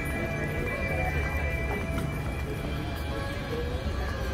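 Music with a steady low beat and sustained notes.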